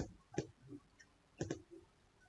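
Computer mouse button clicks: a single click at the start, another about half a second in, and a quick pair of clicks about one and a half seconds in.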